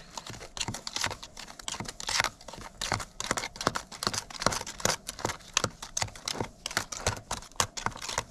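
Metal putty knife stirring and scraping a thick, quick-setting repair paste in a small plastic tub, a fast irregular run of clicks and scrapes as the blade knocks against the tub's sides and bottom.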